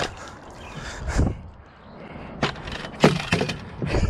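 Several sharp knocks and rustles, about five in four seconds, as a just-landed largemouth bass is handled.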